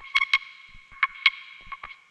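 Sampled percussion loop, sliced in Fruity Slicer, playing back: short, sharp pitched percussion hits at uneven spacing, several a second, over a steady ringing tone.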